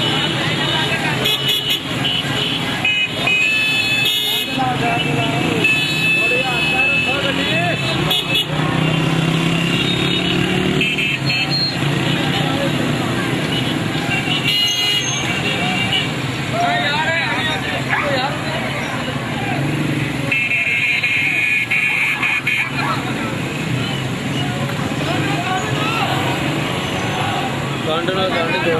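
Vehicle horns honking several times over running car and motorcycle engines and a crowd's voices, one horn held for about two seconds some twenty seconds in.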